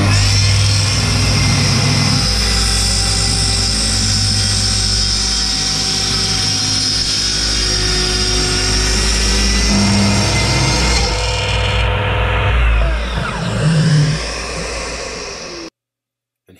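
Festool plunge track saw running and cutting along its guide rail through a redwood slab, a steady motor whine with the rasp of the blade in the wood. About twelve seconds in the high whine drops away and the sound grows rougher, then it cuts off abruptly near the end.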